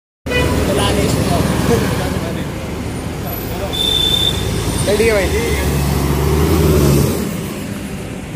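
Roadside traffic, led by the heavy engine rumble of a city bus passing close by. The rumble stays strong until about seven seconds in, then fades, with a brief high squeal near the middle.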